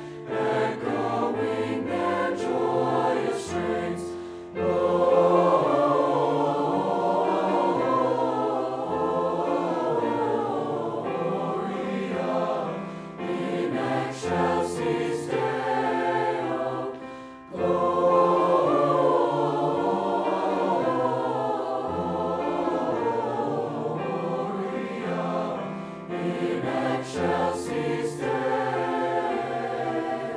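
A mixed high-school choir of boys' and girls' voices singing a sustained choral piece. The sound dips briefly between phrases about four seconds in and again about seventeen seconds in.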